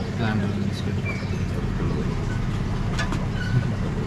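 A steady low rumble, with faint, indistinct voices talking in the background and a few light clicks.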